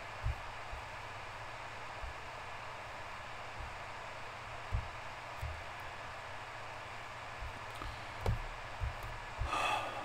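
Steady background hiss of an open microphone in a quiet room, with a few short soft low thumps scattered through it and a brief rush of breath-like noise near the end.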